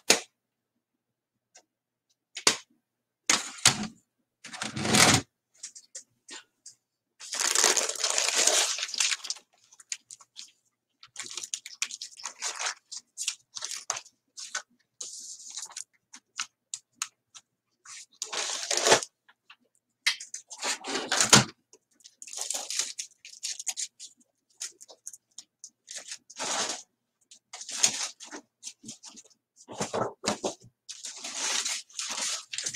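Paper rustling and crackling as the pages of a handmade journal are handled and turned, in short, irregular bursts with brief silent gaps.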